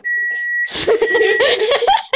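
An appliance's electronic beep, one steady high tone held for about two thirds of a second with a fainter short beep after it. From under a second in, a person laughing breathily over it.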